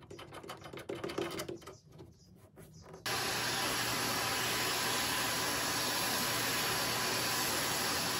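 Faint clicks and handling of plastic conduit fittings. Then, about three seconds in, a shop vacuum starts suddenly and runs steadily, its hose sucking metal shavings out of a galvanized steel wire trough.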